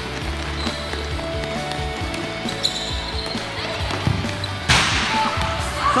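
Background music with held notes over a steady bass, with a futsal ball being kicked on a hard indoor court; a loud, sharp impact from a hard-struck ball comes a little before the end.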